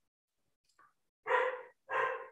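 A dog barking twice, two short barks a little over half a second apart, starting about a second and a half in after a silent gap.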